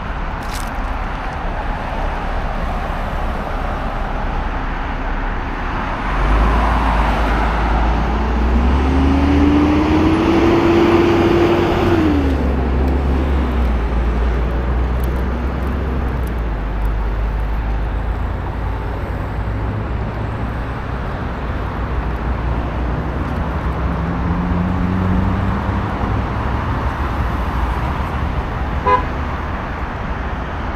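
Steady road traffic rumble on a wide city avenue, with a vehicle passing close and loud about six seconds in, its engine note rising in pitch as it accelerates and then dropping away. A second, fainter engine note passes later, and a very short beep sounds near the end.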